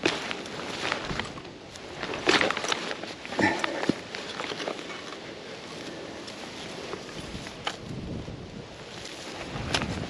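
Metal detectorist's digging spade cutting and levering grass turf: a cluster of scrapes and knocks in the first four seconds, then softer rustling with a couple of sharper clicks near the end.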